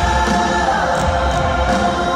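Live pop concert music with singing and a strong bass, played over a stadium sound system and heard from high in the stands.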